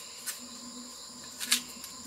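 A large knife cuts into a bamboo shoot with short sharp strikes: a light one early and the loudest about a second and a half in. A steady high chorus of insects shrills throughout.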